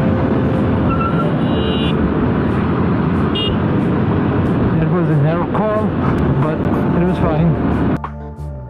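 Live ride sound from a KTM 390 Adventure motorcycle at road speed: loud, steady wind rush and road noise with the engine running. A muffled voice comes through in the second half.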